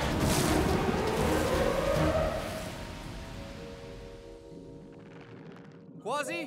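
Animated underwater-storm sound effect, a loud rushing rumble of churning water, under dramatic orchestral score. The rush fades away over the second half, leaving a soft held chord.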